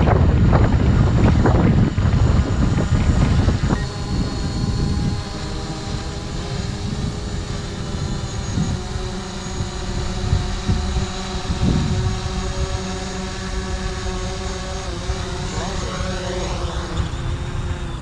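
DJI Mavic quadcopter flying close by, its propellers giving a steady multi-tone whine whose pitch shifts near the end. A loud low rumble covers the first four seconds.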